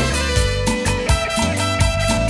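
Live cumbia band playing an instrumental passage, with held melody notes over a steady percussion beat.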